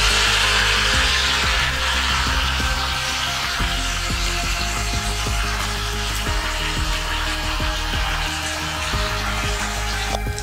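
Curry leaves and green chillies sizzling in hot oil in a small aluminium kadai, loudest just as the leaves go in and slowly dying down. Background music plays underneath.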